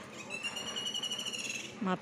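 A single high-pitched animal call, drawn out for about a second and a half, rising slightly and then falling away. A woman's voice starts just before the end.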